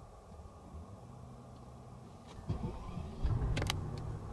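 Mercedes-Maybach S600's twin-turbo V12 being started, heard faintly from inside the cabin. The engine catches about three seconds in, and a low, steady idle takes over.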